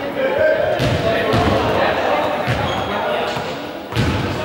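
Voices talking in a large, echoing sports hall, with a ball bouncing on the court in repeated low thuds about once a second.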